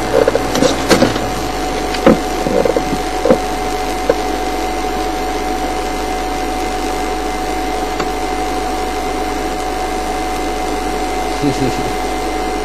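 Steady mechanical hum of a stopped game-drive vehicle's engine idling, with a thin steady whine over it. A few short knocks and blips come in the first few seconds.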